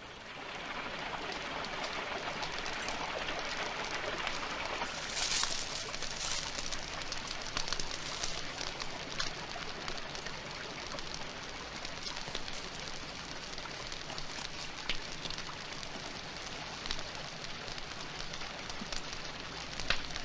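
Steady rush of water falling from a small waterfall down a rock face.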